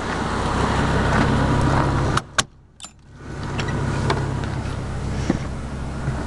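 Steady low rumble with wind-like noise on the microphone, broken a little after two seconds in by a sharp click and a short quiet gap before it resumes. A few lighter clicks come from the motorhome's entry door and steps as someone climbs inside.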